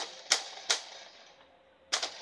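A few sharp plastic clicks from a Nerf Flip Fury dart blaster being handled and worked, spaced out across two seconds with the last near the end.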